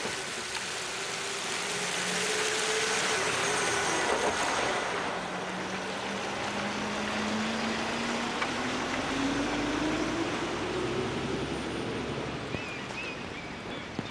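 Volvo FE Hybrid refuse truck driving past over steady tyre and road noise. A whine in it sinks slowly in pitch for the first few seconds, then climbs steadily as the truck speeds up and moves away.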